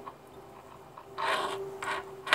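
Two brief rubbing sounds, one about a second in and a shorter one near the end, as fingers handle a wristwatch and its rubber strap.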